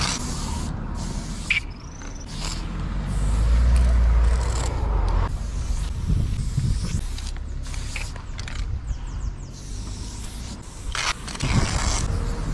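Aerosol spray-paint can hissing in short, repeated bursts as outline strokes are sprayed onto a concrete wall, stopping briefly between strokes. A low rumble swells about three to five seconds in.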